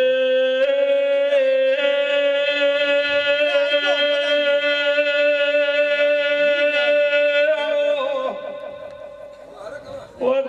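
A man singing one long held note of a Gujarati devotional folk song into a microphone, with a steady lower drone beneath it. The note fades about eight seconds in.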